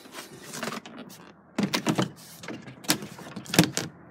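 Irregular sharp clicks, taps and knocks of hand and camera handling against the car's interior trim, in two clusters, the loudest knock near the end.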